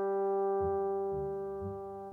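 Computer-generated orchestral opera accompaniment, with no singing, holding a sustained chord while lower notes move underneath about half a second in, about a second in and near the end.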